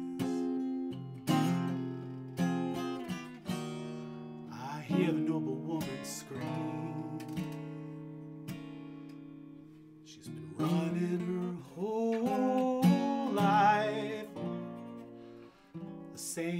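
Acoustic guitar playing an instrumental passage of a slow ballad: chords and picked notes with sharp attacks that ring out. The playing thins and grows quieter about eight seconds in, then picks up again after about ten seconds.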